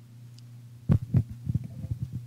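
Steady low hum, then about a second in a run of dull thumps and knocks from a microphone being handled.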